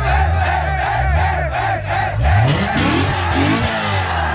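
A car engine runs low and steady, then is revved several times in quick rising blips from about two seconds in. Over it a crowd shouts and cheers.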